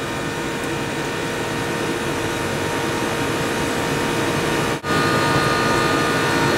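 Fixed-orifice central air conditioner running steadily, compressor and condenser fan giving an even mechanical drone with steady hum tones, while it is being charged with refrigerant. The sound drops out for an instant about five seconds in.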